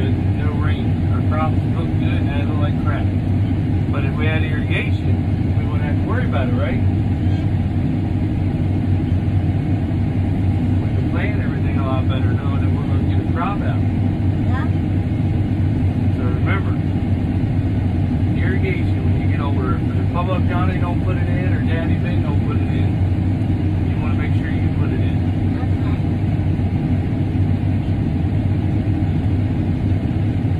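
Farm machine's engine running steadily, a constant low drone heard from inside the closed cab, with faint voices over it now and then.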